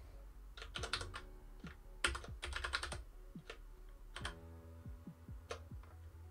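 Computer keyboard typing: two quick runs of keystrokes, then a few scattered single key presses.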